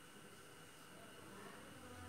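Near silence: room tone with a faint steady high whine.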